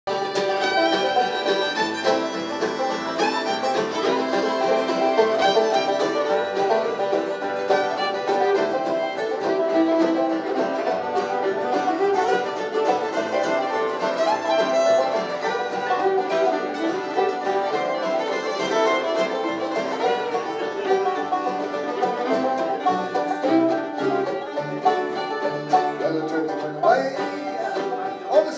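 Live bluegrass band playing an instrumental intro on banjo, fiddle, mandolin, acoustic guitar and upright bass.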